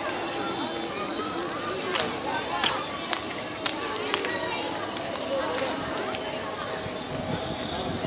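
Indistinct chatter of a crowd of people talking, with a few sharp clicks or taps among it.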